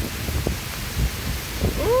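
Heavy thunderstorm rain pouring down with low thunder rumbling under it, and a long drawn-out 'ooh' of surprise starting near the end.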